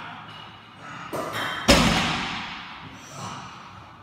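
A loaded deadlift barbell of about 212.5 kg is set down on the floor about a second and a half in. The plates land with one loud, heavy thud that rings on and dies away slowly in the hall.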